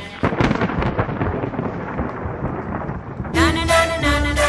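Thunder: a sudden crack just after the start, then a crackling, rumbling roll that dies away over about three seconds. Music comes back in near the end.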